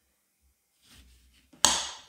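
Kitchen knife cutting through an orange, with faint scraping, then the blade hitting the glazed ceramic tile underneath with one sharp click about one and a half seconds in.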